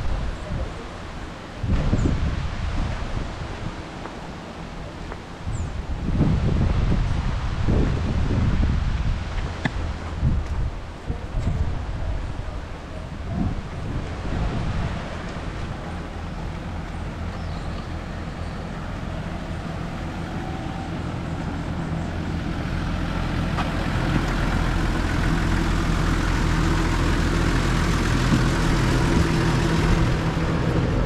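Irregular low rumbling of wind buffeting the microphone during the first half. From about two-thirds through, a Nissan Civilian minibus engine idling steadily, a low even hum that grows louder as it is approached.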